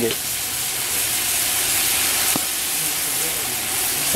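Mutton pieces sizzling steadily as they fry in ghee in a pot over a wood fire, with a single sharp click a little past halfway.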